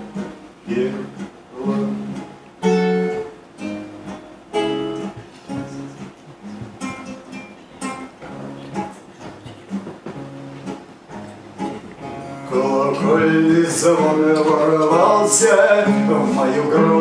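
Acoustic guitar picked one note at a time, each note ringing out. About twelve seconds in it gets louder and fuller, with chords.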